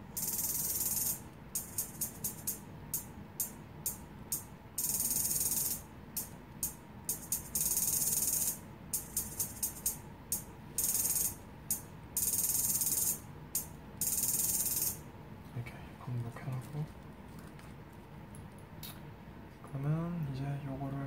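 Programmed beat of high, hissing percussion hits, short ticks mixed with longer held strokes in a rhythm, played back from music-making software. It stops about fifteen seconds in.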